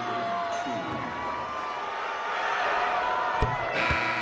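Arena basketball crowd noise during a free-throw attempt: a steady din of many voices with some drawn-out shouts. Two sharp thuds come near the end.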